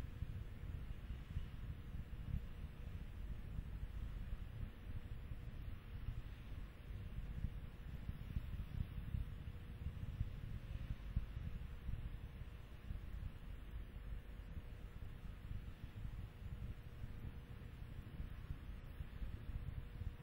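Steady low rumble of background noise with a faint steady hum.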